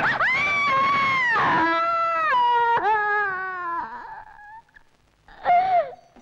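A woman screaming: one long, high scream that steps down in pitch over about four seconds, then dies away.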